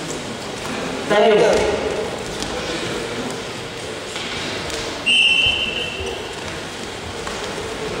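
Voices echoing in a sports hall during a wrestling bout, with a loud shout about a second in. Just after five seconds a short steady high-pitched blast, like a referee's whistle, cuts in and stops before the six-second mark.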